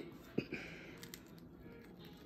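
Faint crackling and small clicks of eggshell being picked off a dyed hard-boiled egg by hand. One sharper crack comes about half a second in.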